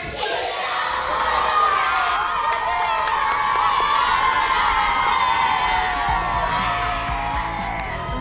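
A crowd of children cheering and shouting together, many voices at once, with background music underneath.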